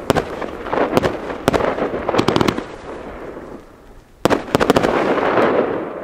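Funke Funkenweide 25-shot, 30 mm firework battery firing: sharp bangs of shells going off, singly in the first second and in quick clusters about two seconds in and again about four seconds in. Between the bangs there is a fizzing crackle from the gold willow stars trailing down, which fades near the end.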